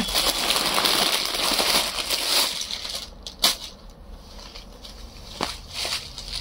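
Clear plastic saree packet crinkling and rustling as a folded saree is pulled out of it. The sound is dense for the first two and a half seconds, then turns into a few lighter crackles.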